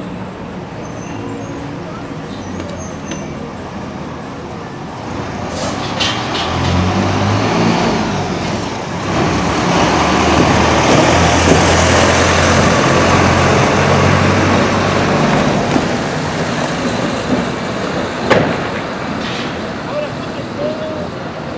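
A motor vehicle passing on the street: its engine hum and road noise build from about six seconds in, are loudest a few seconds later, then fade.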